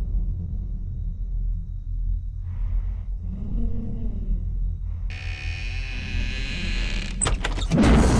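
Low, steady rumbling drone of a horror film's background score, with a hissing eerie layer coming in about five seconds in. A few sharp clicks sound near the end.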